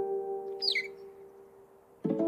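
A held chord of the cartoon score fading away, with a single short downward-gliding cartoon bird chirp a little over half a second in.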